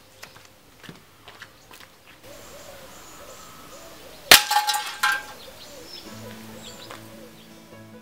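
An air-pistol pellet striking a tin mug target: a single sharp metallic clang with a short ring about four seconds in, followed by a smaller knock. Acoustic guitar music starts near the end.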